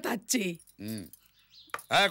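Speech: short spoken utterances, a brief voiced sound about a second in, then a short pause before talking resumes.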